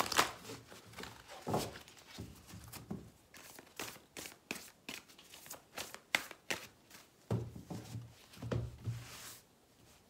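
A deck of tarot cards shuffled by hand: a long run of quick papery flicks and taps. Near the end the cards are spread out across a cloth-covered table.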